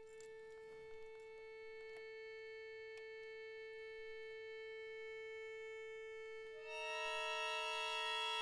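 Accordion holding one soft, steady note. About two-thirds of the way through, more notes come in on top, making a louder sustained chord.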